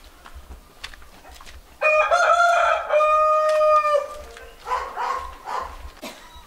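A rooster crows once, a long call of about two seconds that starts a couple of seconds in, followed by a few fainter short sounds.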